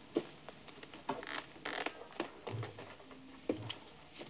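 Coat rustling, light knocks and creaks as a man settles back onto the board of a magician's guillotine, with a sharp knock just after the start.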